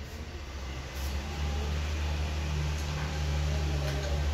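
A steady low mechanical hum, like a motor or fan running, which comes up about a second in and then holds.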